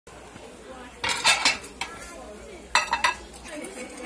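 A metal ladle clanking and scraping against a large iron wok of stew, in two short ringing bursts about a second and a half apart.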